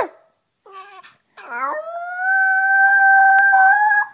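Chihuahua howling: a note that slides up about a second and a half in, then holds as one long, steady howl for about two and a half seconds.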